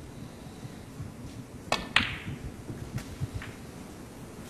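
Snooker cue tip striking the cue ball, then about a quarter second later a louder click as the cue ball strikes the blue, followed by a couple of faint ticks from the balls.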